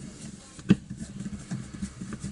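Screwdriver turning out the last screw of a plastic trimmer control handle (Echo SRM-22GES): one sharp click about two-thirds of a second in, then a few faint clicks.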